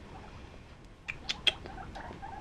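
A few short, high squeaks from a young guinea pig about a second in, over quiet room tone.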